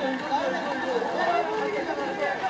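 Several voices talking over one another in lively chatter.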